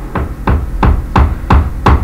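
Steady rhythmic thumping, about three deep knocks a second, evenly spaced.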